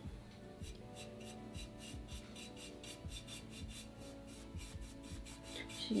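Small paintbrush scrubbing chalk paint onto the glazed surface of an urn in quick, repeated dry-brushing strokes, about four or five a second, faint.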